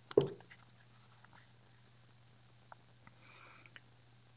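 A brief mouth or breath noise right at the start, then a few faint scattered clicks over a low steady hum of the voice-over microphone.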